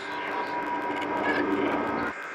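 Electroacoustic music: a dense, steady drone of Kyma-processed frog sounds with a few held tones. It cuts off abruptly right at the end.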